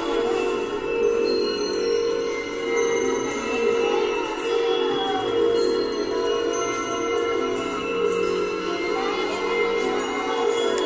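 A Nepali song sung by a girl, with steady, chime-like tones ringing under the voice.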